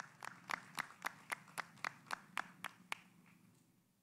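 A small group clapping, with evenly spaced claps about four a second standing out, dying away about three seconds in.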